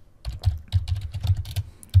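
Typing on a computer keyboard: a quick run of keystrokes as a word is typed.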